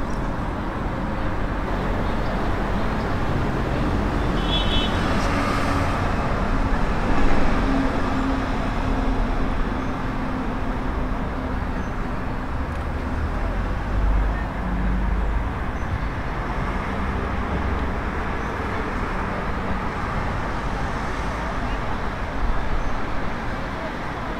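Busy street ambience: steady traffic noise with a murmur of voices.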